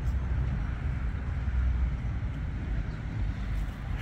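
Steady low rumble of outdoor background noise, strongest in the deep bass and unsteady in level.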